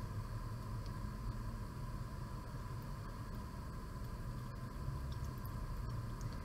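Steady low background hum and hiss of room noise, with no distinct handling sounds.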